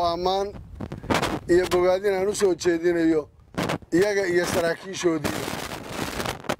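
A man shouting in short, high-pitched phrases through a handheld microphone, with sharp cracks in the gaps between phrases.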